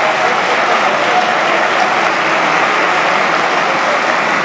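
Lawmakers applauding: steady, sustained clapping from many people across the chamber, with a few faint voices mixed in.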